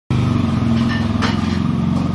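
A motor engine running steadily at idle, a low, even hum, with a light click about a second in.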